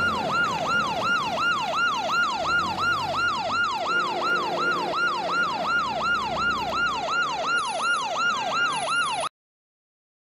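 Police car siren sounding a rapid falling wail, about three sweeps a second, over a low vehicle rumble, cutting off suddenly near the end.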